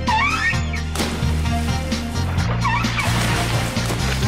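Background music with a steady bass line, over which a cartoon dolphin chatters in squeaky rising-and-falling whistles, once at the start and again about two and a half seconds in. A sharp hit sounds about a second in.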